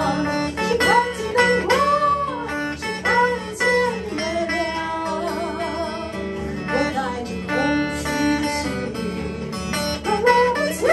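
A woman singing a 1930s–40s Shanghai-era Chinese popular song, accompanied by acoustic guitar in a bluesy style. She holds long notes, with a wavering vibrato in the middle.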